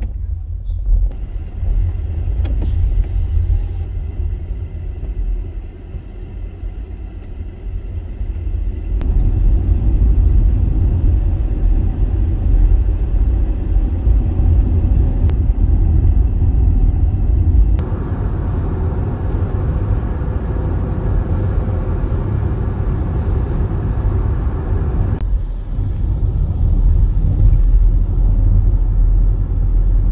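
A car driving, heard from inside the cabin: a steady low engine and road rumble with tyre noise, getting louder about a third of the way in and changing sharply in tone twice in the second half.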